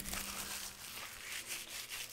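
Faint crinkling of a card booster box and its wrapping being handled and set down, strongest in the first second and fading, over a low steady electrical hum.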